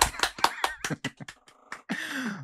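People clapping their hands in quick, uneven claps that thin out after about a second, with some laughter.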